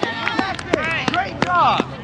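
Children's voices calling and shouting across a youth soccer field, several overlapping and high-pitched, with a few short sharp taps among them.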